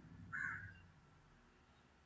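Quiet room tone in a pause of speech, with one brief faint sound about half a second in.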